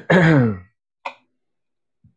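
A man clearing his throat, a voiced sound falling in pitch that ends about half a second in, followed by a brief short mouth sound about a second in.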